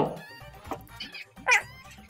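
A few faint clicks, then one short, high squeak that rises and falls in pitch about one and a half seconds in.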